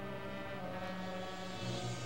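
Marching band brass holding a low, sustained chord that shifts to new notes twice, with a hiss swelling toward the end.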